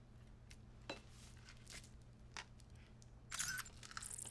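Mostly quiet with a faint steady hum, broken by a few light clicks and clinks and one brief louder noise near the end.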